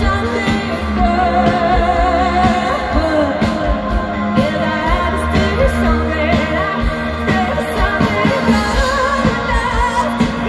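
Live pop-rock band playing, with a woman singing lead over electric guitars, bass, keyboards and a steady drum beat, heard from among the crowd at an outdoor show.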